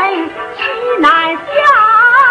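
Yue opera music from a 1954 recording: a sliding, pitched melodic line, either a sung melisma or the instrumental interlude between sung lines, settling into a long held note about one and a half seconds in.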